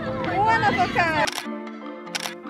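A camera shutter click about a second in, over background music; right after the click the music loses its bass and carries on thin and steady.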